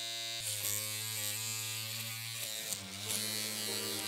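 Electric razor buzzing steadily as a man shaves his head, heard over a video-chat connection. The buzz wavers a little in pitch as it runs.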